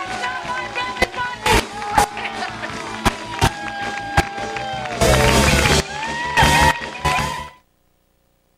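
Live band music with a singing voice, drum hits and acoustic guitar, with two loud crashing stretches near the end; the music cuts off suddenly just before the end.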